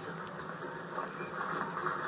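Steady low hum and hiss of a television drama's soundtrack during a scene change, played through a television's speaker and picked up by a camera in the room.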